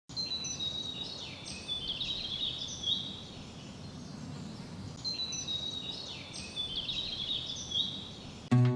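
Birds chirping in two similar runs of quick, high twittering notes, the second starting about five seconds in, over a low steady background of ambient noise.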